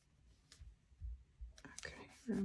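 Faint paper-handling sounds: a few soft clicks and low bumps as a sticker is peeled and pressed down onto a planner page.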